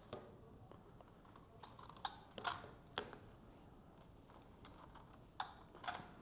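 Several faint, sharp plastic clicks at uneven intervals as fiber optic connectors are cleaned and handled with a small connector cleaning tool.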